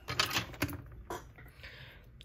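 A few sharp plastic clicks and light taps, several close together near the start and single ones later, with a short rustle near the end, as the opened laptop is handled.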